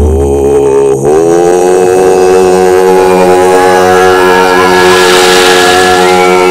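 A steady, sustained drone of several held tones from the film's opening music; it slides up into pitch about a second in and then holds level. A hissing rush swells over it near the end.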